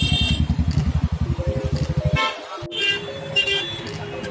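Street traffic: an engine thumping rapidly close by for about two seconds, then stopping, followed by several short vehicle horn honks.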